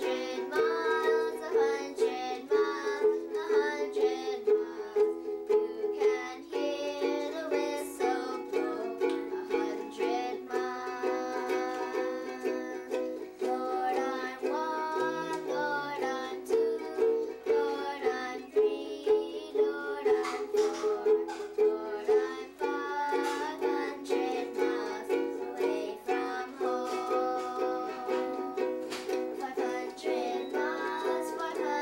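Ukulele strummed in a steady rhythm, with a girl's voice singing along.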